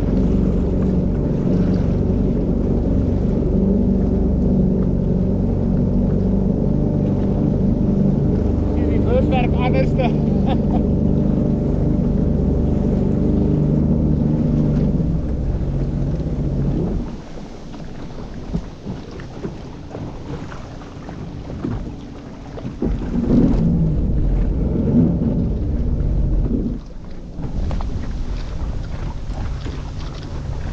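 A boat's engine running steadily under way, then throttled back about seventeen seconds in, after which the level drops and the irregular splash of water and wind noise remain. A short higher-pitched gliding sound rises over the engine about ten seconds in.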